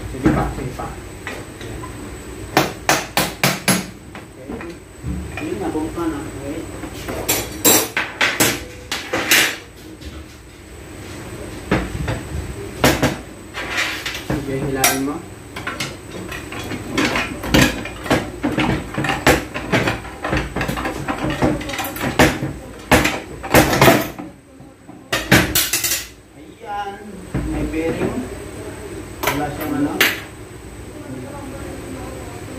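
Hammer blows and metal tool clinks on a transfer case housing as it is knocked loose and split apart, with a quick run of about six taps a few seconds in and scattered strikes after.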